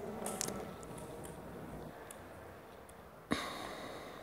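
Cold-mounting powder poured from a plastic bottle into a small glass beaker of setting liquid, faint, with a few light ticks early on. A single sharp knock about three seconds in.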